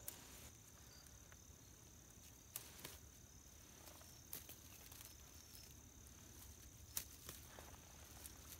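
Faint crickets trilling steadily and high, with a few faint snaps of thin dry weed stems being broken off by hand, the sharpest near the end.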